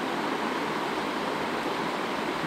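Steady, even hiss of background noise with no speech, unchanging throughout.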